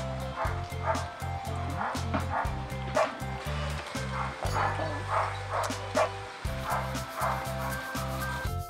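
Dogs barking and yipping in short repeated barks, over background music with a steady bass beat.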